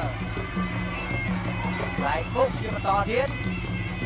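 Traditional ringside fight music for Khmer boxing: drums keeping a quick steady rhythm under a droning wind melody, with a commentator's voice over it.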